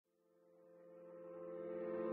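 Faint low drone of several steady held tones, swelling in volume: the opening of an intro music track.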